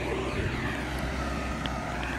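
An engine running steadily, a low hum under a wash of noise.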